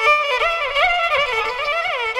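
Carnatic classical music: a single melody line slides and wavers through ornamented notes (gamakas), with faint percussion strokes beneath.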